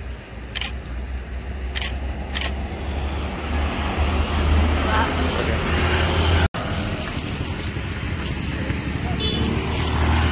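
Small motorbikes passing along the road close by, their engine and road noise swelling over several seconds, with voices in the background.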